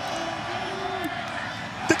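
Stadium crowd noise with a few long, drawn-out shouts, then a single sharp thump near the end as the field-goal attempt is kicked and blocked.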